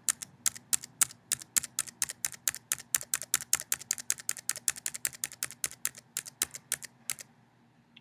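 A computer keyboard's Tab key pressed repeatedly in an even rhythm, about four clicks a second, roughly 28 presses, stopping about a second before the end.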